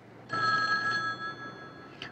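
A telephone bell ringing: one ring starts about a third of a second in and lasts about a second and a half.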